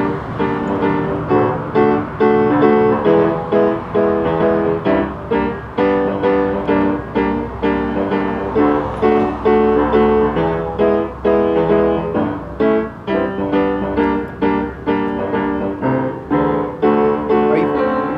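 Upright piano played with both hands, chords struck one after another in a steady rhythm.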